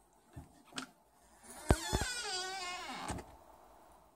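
Small dog giving one drawn-out whine whose pitch wavers, just after two sharp clicks.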